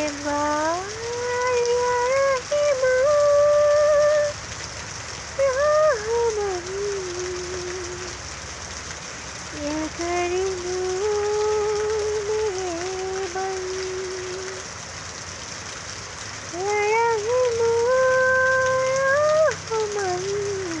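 Steady rain falling on tree leaves, with a voice singing four phrases of long held notes over it.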